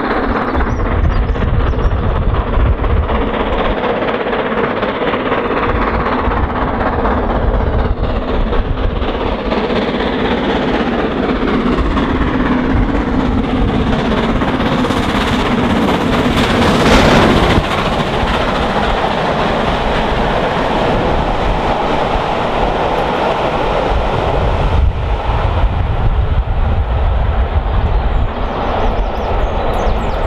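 GWR Castle class 4-6-0 steam locomotive running at speed with a full train of coaches, its exhaust and wheels on the rails filling the sound. It is loudest about two-thirds of the way through, as the engine passes close by, and then the coaches roll past.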